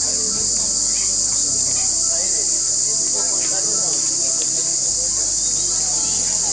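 Loud, steady, high-pitched drone of a chorus of insects, unbroken throughout.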